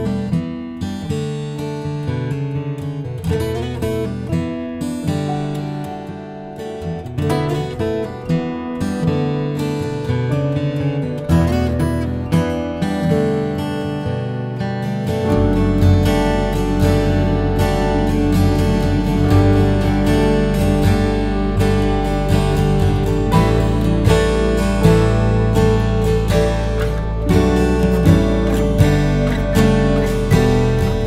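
Steel-string acoustic guitar tuned E-B-D-G-A-D, played solo with open strings ringing under the chords; the playing gets fuller and a little louder about halfway through.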